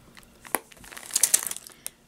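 Clear plastic sleeve around a rolled diamond-painting canvas crinkling lightly as it is handled and its wire tie pulled off, with a sharp click about half a second in and a short run of crinkles a little past the middle.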